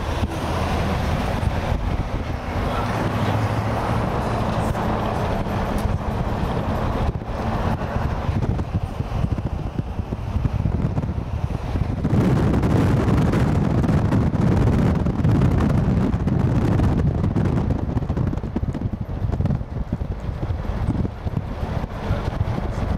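Road and engine noise heard from inside a moving car, with wind buffeting the microphone. The noise is steady and gets louder and deeper for several seconds about halfway through.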